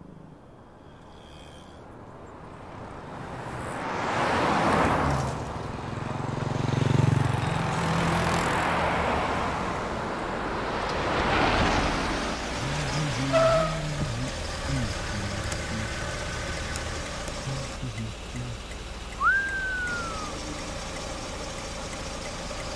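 Road traffic with cars driving past, the noise swelling as vehicles go by about four and eleven seconds in. Later come a short high tone and a brief tone that rises and then falls.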